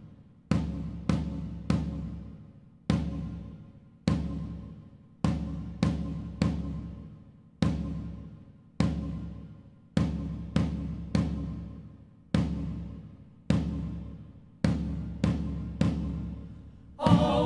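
Music: deep, ringing drum strikes in a slow, solemn pattern, single beats about a second apart broken by quick groups of three, each strike fading away before the next. It is the opening of a song, before any voices come in.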